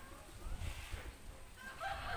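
A rooster crowing faintly, its call starting near the end and running on, over a low rumble of room noise.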